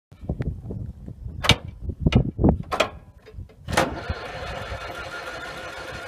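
Allis-Chalmers crawler loader's engine firing unevenly with several sharp pops, then catching about four seconds in and settling into a steady run.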